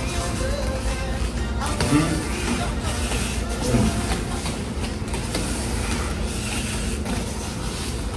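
Quad roller skate wheels rolling on a hardwood floor, a steady low rumble as the skater works through crossover footwork, with music playing underneath.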